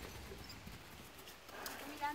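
Faint, irregular hoof steps of horses walking.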